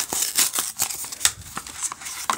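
Pokémon card booster pack wrapper crinkling and tearing as it is torn open by hand, with dense sharp crackles at first that thin out to scattered ones.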